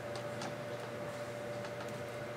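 A few faint, light plastic clicks as the jointed segments of a plastic knot toy are twisted and bent by hand, over a steady faint whine.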